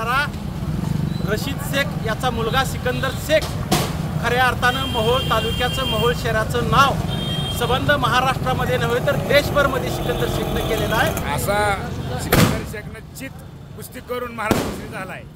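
A man speaking Marathi to the camera over a steady low rumble of street traffic, with a sharp knock near the end as his speech stops.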